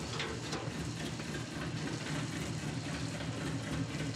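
1958 Plymouth Fury's V8 engine running with a steady low rumble.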